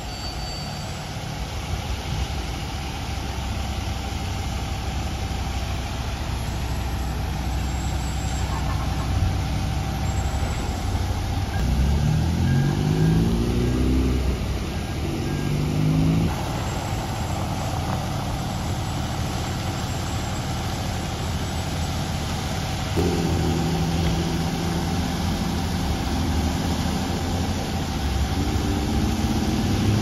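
A steady hiss of water spraying from a sheared fire hydrant over the low running of a fire engine. Vehicles accelerate through the intersection, their engines rising in pitch through gear changes about twelve seconds in and again from about twenty-three seconds.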